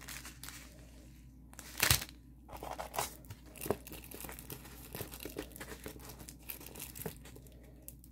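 Crinkling and rustling of a diamond-painting kit's plastic packaging and coated canvas as it is handled and unrolled, in irregular crackles with the loudest rustle about two seconds in.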